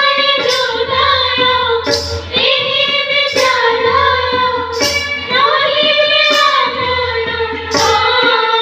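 Schoolgirls' voices singing a song together, with long held notes, over a regular cymbal-like clash about every second and a half.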